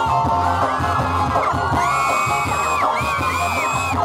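Loud concert music played over a stage PA system, with a steady bass and high, gliding cries over it.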